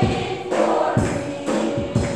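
Choir singing a gospel song over a steady beat of about two hits a second.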